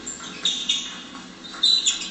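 A table tennis rally: the ball clicking off bats and table, with sports shoes squeaking sharply on the hall floor as the players move, several short squeaks and clicks bunched near the end.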